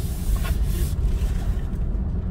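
Steady low rumble inside the cabin of a Suzuki Ertiga Hybrid, its 1.5-litre four-cylinder engine running while the car is stopped in D, before idle start-stop has cut it.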